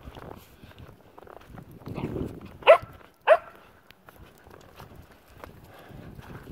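A dog barks twice, about half a second apart, near the middle, over light crunching footsteps in snow.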